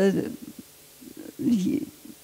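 Speech only: a woman's voice trails off in a hesitation 'äh'. After about a second's pause comes a short, low hummed filler sound near the end.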